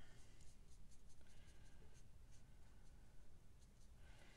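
Faint scratching of a marker tip stroking over cardstock as a small area is colored in, in short light strokes.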